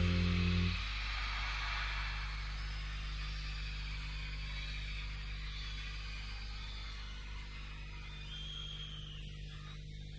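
A live band's held final chord stops under a second in. Audience cheering and applause carry on and slowly fade over a steady low electrical hum from the sound system.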